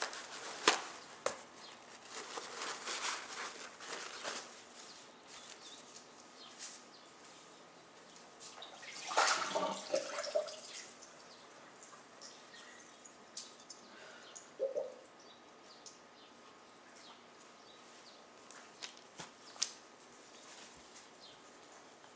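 Paper towels rustling and crinkling as they are handled and spread out over paper on a counter, with scattered light taps. The loudest rustle comes about nine seconds in.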